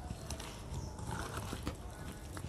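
Hands mixing fish pieces with spice paste in a steel bowl: irregular small clicks and knocks of the fish and fingers against the bowl.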